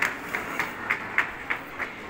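Hard-soled footsteps clicking on cobblestone paving, about three steps a second, over a low outdoor background hiss.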